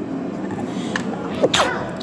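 A single short burst from a person's voice about one and a half seconds in, sharp at the start and falling in pitch, over a steady background murmur.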